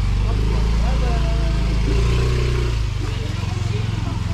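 An engine running steadily at idle, a constant low hum, with faint voices over it in the first half.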